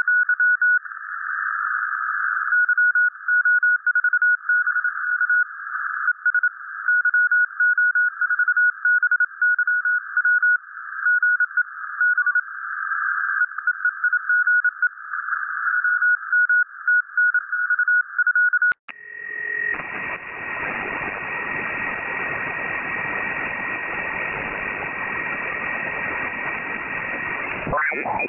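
Morse code (CW) heard on a Perseus software-defined radio receiver through a narrow CW filter: a single mid-pitched tone keyed on and off over filtered band hiss. About two-thirds of the way through there is a click and the audio opens up into wide sideband band hiss with a steady high whistle, as the receiver is switched to a wide LSB filter, then a brief tuning sweep near the end.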